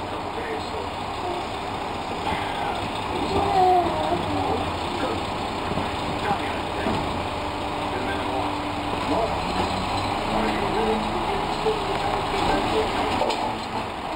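Automated side-loader garbage truck's engine running steadily at the kerb, with its hydraulic arm lifting a cart near the end.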